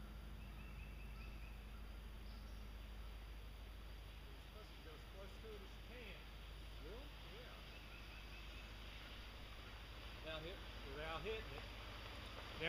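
Faint outdoor ambience on a woodland trail: a low steady rumble with a few faint high chirps. Voices of two approaching cyclists rise in the last couple of seconds.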